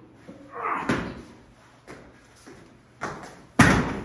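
Scuffles and thuds of bodies and feet on a padded training mat during a throw, ending with one heavy thud as a body is slammed onto the mat near the end.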